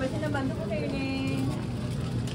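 Supermarket background: a nearby shopper's voice talking until about a second and a half in, over a steady low hum.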